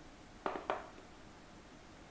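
Two short, light knocks about a quarter second apart, from the metal case of a hot air rework station being handled.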